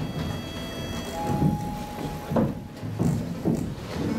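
Large soft stage blocks being pushed across and set down on a wooden stage floor: low scraping rumbles and a few soft thumps. Faint music with held notes plays behind.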